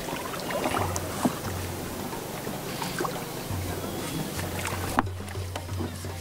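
Background music with a low bass line that comes and goes, over water sloshing and scattered small knocks as floating oyster racks are handled in the water.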